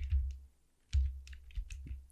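Typing on a computer keyboard: a quick run of key presses starting about a second in, with a low thud beneath the clicks.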